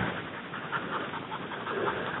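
A bird dog panting.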